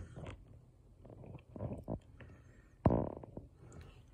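Low, uneven rumbling handling noise, with one sudden loud rumble about three seconds in lasting about half a second.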